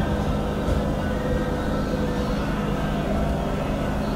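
Sound of a church programme playing on a television: a dense, steady mix with sustained held tones, like a congregation's music.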